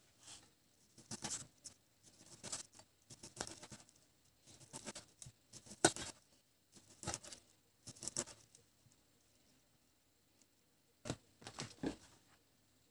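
Knife slicing through a slab of dry-salted pork fat (salo) onto a plastic cutting board, a crisp stroke about once a second. After eight cuts there is a pause of a couple of seconds, then two more cuts near the end.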